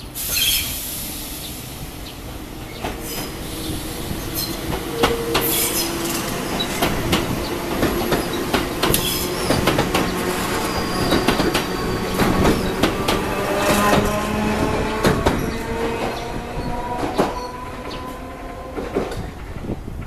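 Enoshima Electric Railway (Enoden) electric train passing close by, its wheels clicking over the rail joints, with a squealing whine from the wheels and motors. It starts with a sudden sharp sound, is loudest in the middle as the cars go past, and fades near the end.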